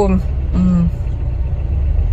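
Car engine idling, a steady low rumble heard inside the cabin, with a short hum from a woman's voice about half a second in.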